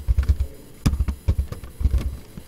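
Computer keyboard keys being pressed: several separate keystrokes with dull thumps, at uneven spacing, as a short word is typed.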